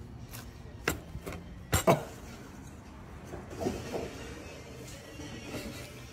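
A knife cutting down through a tall sandwich of toasted bread and layered meats, with a few sharp crunches and knocks in the first two seconds, the loudest two close together.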